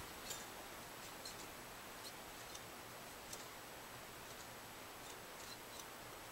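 Faint, irregular light metallic ticks of a feeler gauge blade being slipped under a guitar string to check neck relief, over a low hiss.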